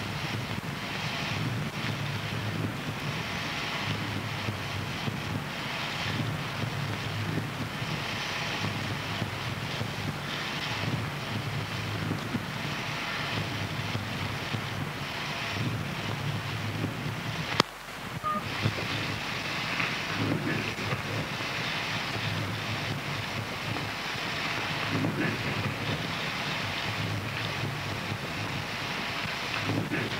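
Harsh noise music: a dense, steady wall of rough noise with a low rumble under a hissing upper band. A sharp click comes a little past halfway, the sound drops out for a fraction of a second, and then the noise resumes.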